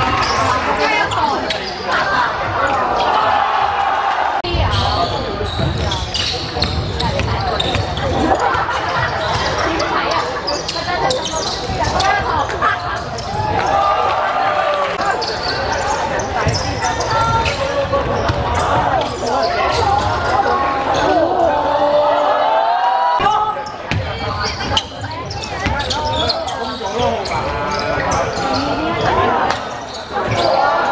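A basketball bouncing on a hardwood gym floor during play, with players' voices calling out, heard in a large indoor sports hall.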